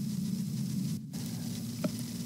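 Steady hiss and low hum of the recording's background noise during a pause in the narration, with one faint short click near the end.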